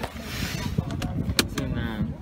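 Rustling and rubbing of a phone being handled inside a car, with a sharp click about one and a half seconds in and a few lighter ticks.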